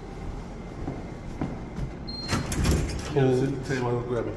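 An office door being unlocked and opened: a short electronic beep, as from its keycard reader, then the clunk of the latch and the door swinging. A man's voice is heard near the end.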